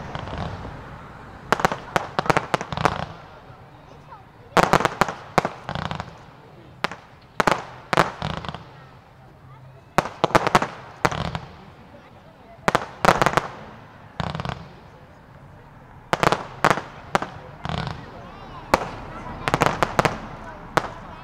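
Professional fireworks display: volleys of sharp aerial bursts and bangs in quick clusters, with a new salvo every couple of seconds.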